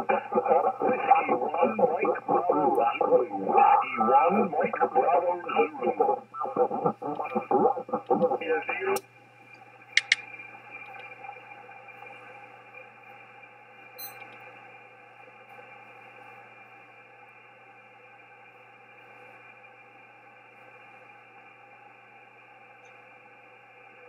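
Single-sideband voice from an Icom IC-7610 transceiver, thin and band-limited. It cuts off abruptly about nine seconds in as the radio auto-tunes to a new frequency. A brief tone follows about a second later, then steady faint band noise with no signal on the 17 m band.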